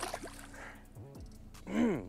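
A walleye splashing into the lake as it is released over the side of the boat, a sharp splash at the start followed by brief water wash. Near the end, a man's short vocal sound.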